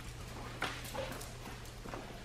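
A few soft, separate footfalls and claw taps as a dog and its handler move across a concrete floor, over a steady low room hum.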